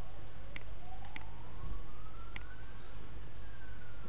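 A siren wailing, its single tone sliding slowly down, then up and down again over the few seconds, with several sharp mouse clicks over a low steady hum.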